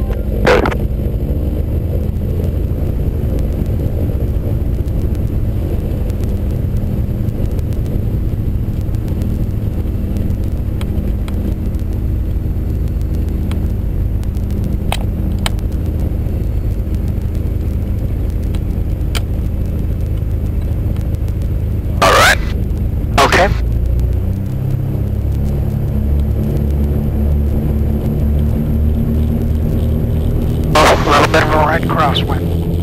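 Twin piston engines of a Piper PA-34 Seneca II running steadily, heard from inside the cockpit. About three quarters of the way through, the engine note changes as the aircraft rolls down the runway for takeoff.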